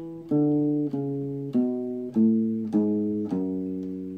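Nylon-string acoustic guitar playing a slow single-note finger exercise: six notes plucked with the thumb on the low strings, evenly about 0.6 s apart, each ringing on until the next. They are fretted with the first, third and fourth fingers in a 1-3-4 pattern, moving along the neck.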